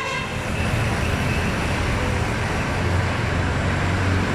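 Street traffic: a steady low engine hum from passing motor vehicles, swelling about three seconds in.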